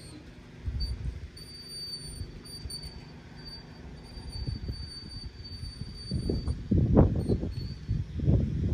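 Wind buffeting the microphone in gusts of low rumbling, one short gust about a second in and a stronger run of gusts near the end.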